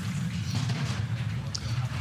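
Two-man bobsleigh sliding down an ice track at speed, its steel runners giving a steady low rumble.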